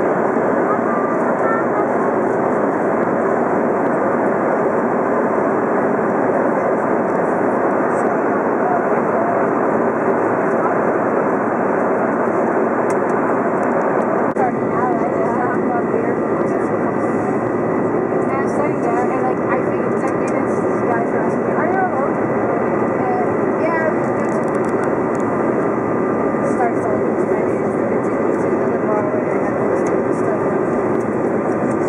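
Steady cabin noise of an airliner in flight, an even roar of engines and rushing air, heard from inside the passenger cabin as the plane comes down low over the city on approach. About halfway through, a faint steady high tone joins the roar.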